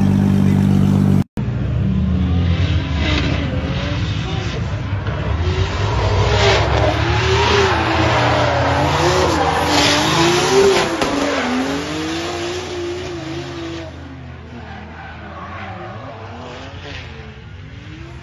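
A drift car's engine revving up and down through a drift, its note wavering and climbing and falling, with tyre squeal beneath it; it fades to a quieter background about fourteen seconds in. Before it, a steady low engine note that cuts off abruptly about a second in.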